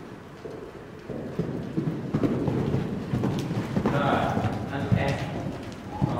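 Horse cantering on soft arena footing, its hoofbeats a dull, uneven thudding that grows louder from about a second in as the horse comes closer.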